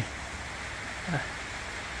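Steady hiss of light rain falling outdoors, with a brief faint voice sound about a second in.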